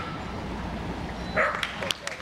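A Shetland sheepdog barks once, a short sharp bark about one and a half seconds in, over a steady low hum.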